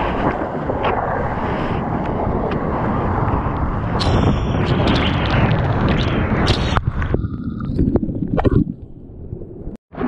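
Sea water sloshing and splashing against an action camera on a bodyboard. About four seconds in, the camera goes under the surface: the sound turns muffled and bubbly, with sharp clicks and pops. It drops out briefly just before the camera comes back up near the end.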